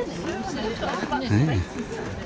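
Several people talking at once, overlapping voices of chatter, with one voice rising louder about one and a half seconds in.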